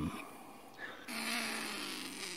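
A trapped pine marten growling: one steady, raspy growl held at an even pitch, starting about halfway through.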